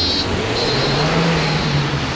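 City bus diesel engine revving up, its low note rising in pitch and then holding. A brief high chime sounds right at the start.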